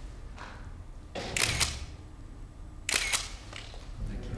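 Press photographers' still cameras firing at the posed group: shutters clicking with film advancing, in two short bursts about a second and a half apart.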